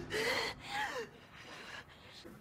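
A young woman gasping in distress: two short breathy gasps in the first second.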